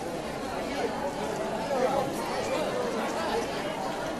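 Crowd chatter: many voices of a seated crowd of students talking at once, overlapping into a steady babble.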